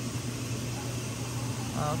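Stainless-steel steamer pot running on the stove: a steady low hum with an even hiss. A voice starts near the end.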